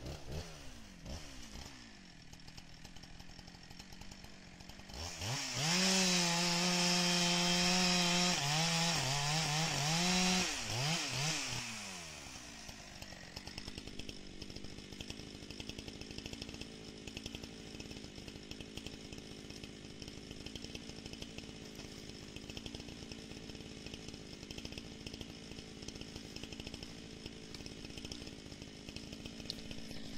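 Two-stroke chainsaw revving up and running at full throttle for about five seconds, its pitch stepping up and down, then winding down and idling steadily for the rest.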